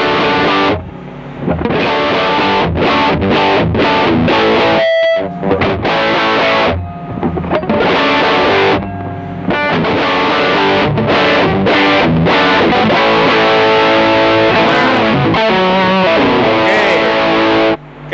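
Squier Bullet Series Stratocaster with Kin's pickups, on the middle-and-bridge pickup position, played through a distortion pedal: overdriven chords and lead lines with some bent, wavering notes, broken by a few short pauses and stopping abruptly just before the end.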